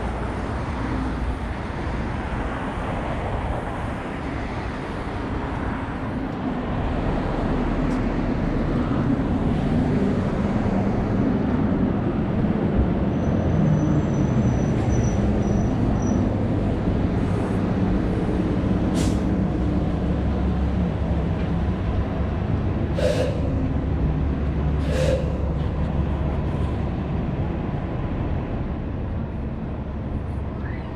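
City street traffic: a steady low rumble of passing vehicles that grows louder about a quarter of the way in, with a faint high whine in the middle and a few short, sharp sounds near the end.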